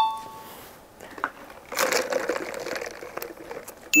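Spicy chicken soup being ladled and spooned from the pot: a couple of seconds of liquid splashing and pouring, with a few light clicks of utensils against the dishes.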